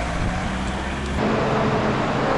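Street traffic noise with a heavy low rumble. A little over a second in, it cuts abruptly to a steady hum in a large train station hall.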